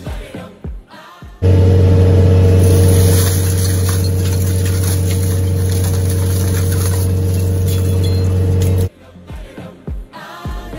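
Doppstadt SM-620-K Plus trommel screen running on test after its conveyor drive was refitted: a loud, steady drone with a low hum and a fixed higher tone. It comes in suddenly about a second and a half in and cuts off suddenly about nine seconds in, with background music on either side.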